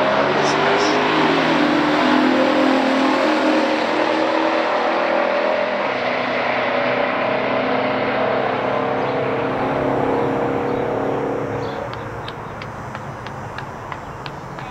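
Two V8 muscle cars at full throttle down a drag strip, a 1971 Chevelle SS454's 454 V8 and a 1969 Cutlass's 350 V8, each note climbing in pitch and dropping back at the upshifts of their three-speed automatics. The sound fades about twelve seconds in as the cars pull away toward the finish line.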